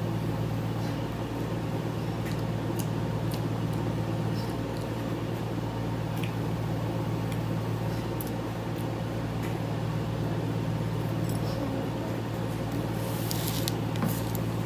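A steady low hum, with scattered faint clicks.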